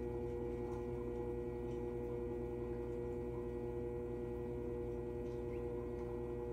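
Electric pottery wheel running at a steady speed, its motor giving a constant, even hum.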